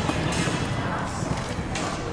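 A horse galloping on arena dirt, its hoofbeats mixed into arena noise with PA music and a voice in the background.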